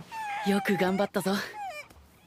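Animated-episode voice acting: a high, wavering voice holds a long cry for about a second while a lower voice speaks, then a short falling cry near the end.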